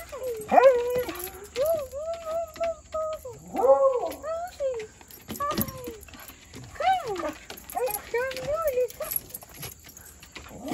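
Beagles whining and howling in excited greeting: a run of high, wavering cries, some short and some drawn out for over a second.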